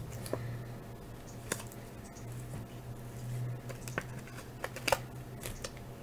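Cardboard hockey cards being handled and laid down one by one on a desk mat: a few faint, scattered clicks and taps over a low steady hum.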